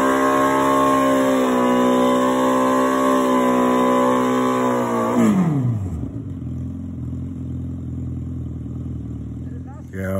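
Sport motorcycle engine held at high revs during a rear-tyre burnout. About five seconds in the revs drop quickly and the engine settles to a steady idle.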